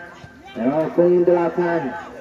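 A man's voice calling out in one long, drawn-out stretch of commentary, held at a steady pitch, beginning about half a second in after a short pause.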